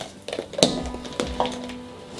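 Soft background music, with a few sharp clicks and knocks from things being handled and rummaged in a handbag.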